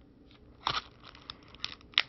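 Small plastic parts bags crinkling as they are handled, in a few short crackles, the loudest a little under a second in.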